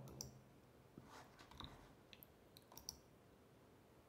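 Near silence with a few faint, separate computer mouse clicks.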